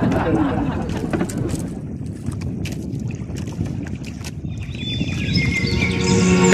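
Wind and sea rumble on the microphone aboard a small outrigger fishing boat, with scattered sharp clicks and knocks. Music with stepped melody lines comes in about five seconds in.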